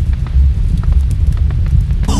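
Fire sound effect: the loud, low rumble of a blaze with scattered crackles and pops.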